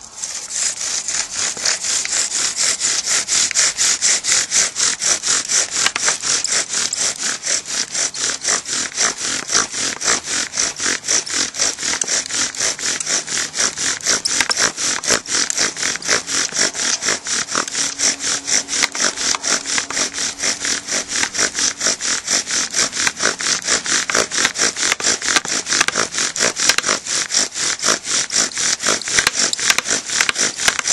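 Bow drill: a Bradford pear spindle spun by the bow in a Bradford pear hearth board, grinding in rapid, even back-and-forth strokes without a break. The socket is being worked hot enough to smoke.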